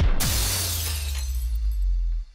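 Record-label logo sound effect: a sudden crash-like hit, its bright noise fading over about a second and a half above a sustained low boom.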